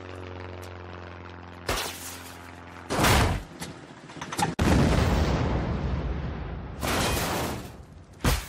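Cartoon sound effects of a light single-engine propeller plane: the engine drones steadily, then a loud bang about three seconds in as it catches fire, and a big explosion about a second and a half later with a long rumbling blast, and another blast near the end as the plane crashes.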